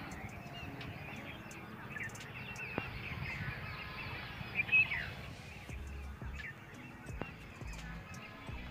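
Many small birds chirping and twittering over a low steady rumble.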